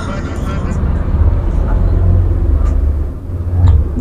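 A steady, fairly loud low rumble, like a motor running, which cuts off suddenly at the end.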